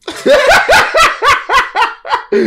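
A man's loud, hearty laughter: a rapid run of 'ha' bursts, about three and a half a second.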